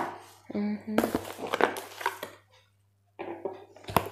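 Hands opening and handling a cardboard package: a sharp knock at the start, then a series of short rustles and scrapes. Near the middle the sound drops to dead silence for about a second, then more short handling noises follow, with another sharp click near the end.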